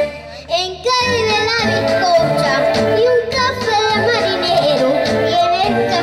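Copla singing: a high solo voice with wide vibrato comes in about a second in, after a brief dip, and carries a long wavering line over keyboard accompaniment.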